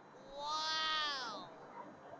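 A single meow-like cat call, rising then falling in pitch, lasting about a second and fainter than the surrounding talk.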